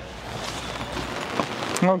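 Steady rain falling, an even hiss that comes in suddenly at the start and grows slightly louder.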